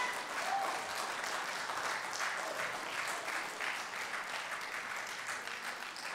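A church congregation applauding in dense, steady clapping that fades a little toward the end.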